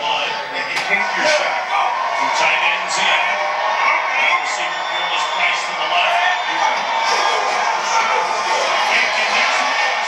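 Football telecast audio played through a TV's speakers: music mixed with stadium crowd noise and indistinct voices, steady throughout.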